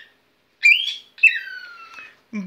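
Whiteface cockatiel whistling: a short rising whistle, then a longer whistle that glides steadily down in pitch.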